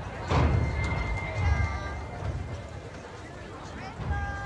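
High school marching band playing on the field, heard at a distance, with low thuds about a second apart and a few held notes, mixed with voices.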